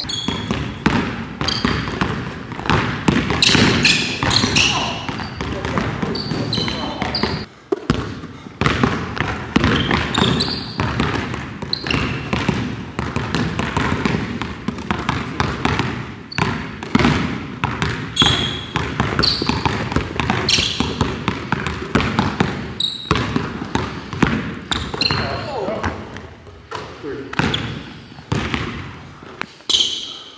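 Basketballs dribbled on a hardwood gym floor: a rapid, irregular run of sharp bounces.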